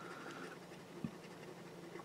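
Faint scraping of a coin rubbing the scratch-off coating from a lottery ticket, with one soft thump about a second in.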